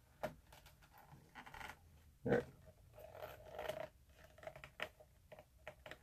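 Faint scraping and rustling of leather pieces being slid, lined up and pressed together by hand on a wooden board, with a few small clicks.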